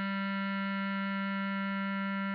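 Bass clarinet holding one long, steady note of the melody.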